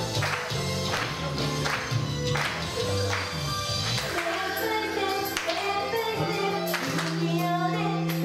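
Live idol pop song performed on stage: an upbeat track with a steady drum beat and bass, and from about four seconds in, girls' voices singing the melody over it.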